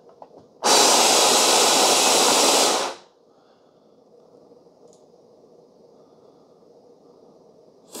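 OXO Brew conical burr grinder grinding coffee beans for about two seconds, then cutting off on its timer.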